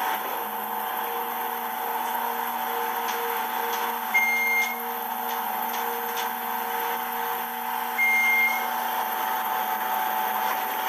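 Elevator car travelling: a steady hum from the drive starts about half a second in and fades out near 8 s as the car slows. Two short, high beeps sound about four seconds apart, the second as the car arrives.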